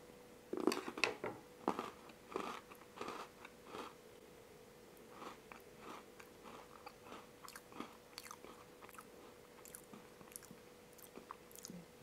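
A person biting into and chewing half of a Fazer Domino Mini sandwich biscuit: crunchy bites loudest over the first few seconds, then fading to softer chewing.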